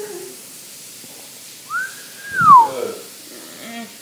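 A single whistled note, rising and holding, then gliding down, with a loud blow or bump on the microphone as it falls.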